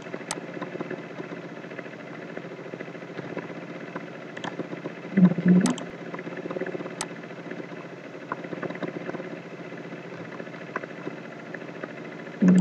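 Steady background hum with a few sharp computer-mouse clicks, and a brief voice sound about five seconds in.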